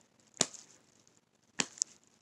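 Sharp smacks of a hand striking the open palm of the other hand, tried with the left hand: one about half a second in, then two more close together near the end, the last one fainter.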